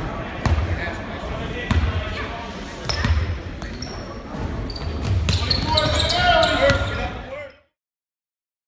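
Basketball game sound in a gym: a ball dribbled on the hardwood floor three times at an even pace, sneakers squeaking, and players' and crowd voices growing louder near the end. The sound then cuts off abruptly.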